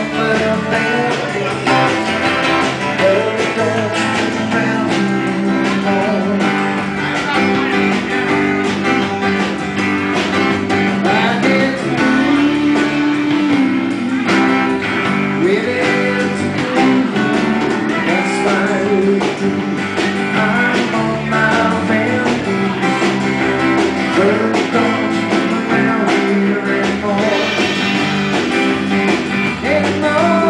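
Small band playing live: acoustic guitars strummed over a steady drum-kit beat.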